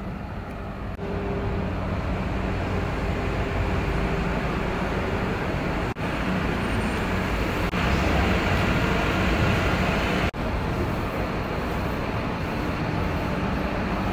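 City bus engines running and idling at a covered bus-station platform, a steady low hum that grows louder about eight seconds in. It cuts out briefly twice.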